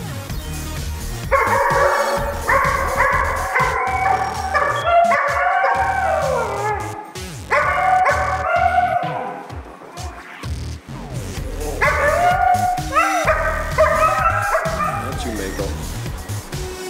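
Dogs howling and yipping in three bouts of long wavering calls, several dropping in pitch at the end, over background music with a steady beat.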